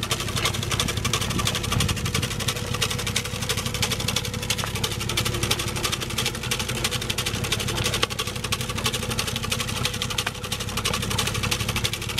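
Electric BOSS TGS 600 tailgate salt spreader running on a slow-moving pickup, its spinner throwing salt that strikes the pavement in a dense, fast crackle, over the steady hum of the truck's engine and the spreader motor.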